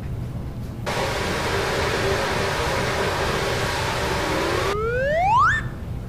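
Water running hard from a tap for about four seconds, rinsing out a silk screen, then shut off abruptly. A loud whistle climbs steeply in pitch as it stops and ends about a second later.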